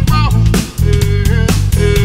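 Music: a remix track with plucked guitar notes over a drum kit beat and a bass line.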